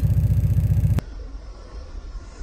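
An engine running at idle with a rapid, steady low pulse, cut off abruptly about a second in and followed by a much quieter background.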